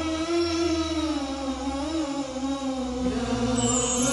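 Closing-theme vocal chant in the manner of a nasheed: a voice holding long notes that slide slowly up and down in pitch, over a steady low hum.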